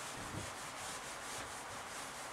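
A cloth eraser wiping a whiteboard: a soft, even rubbing hiss that swells and eases with the wiping strokes.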